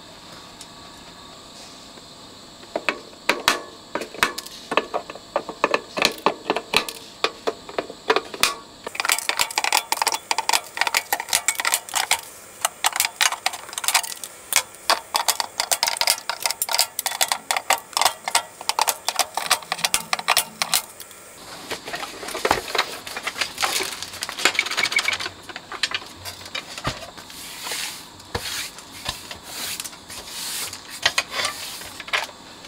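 Flush side cutters snipping the excess component leads off a tape deck's circuit board after soldering: a long run of sharp clicks, several a second, with the clipped leads ticking onto the board. Near the end they give way to a rougher scraping and rustling.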